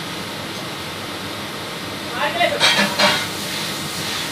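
Steady hiss of room air conditioning, with a brief burst of indistinct voice a little after two seconds in.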